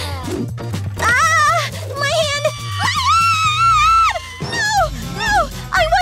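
Background music with a woman's wordless vocal cries over it, one long wavering cry held for about a second just past the middle.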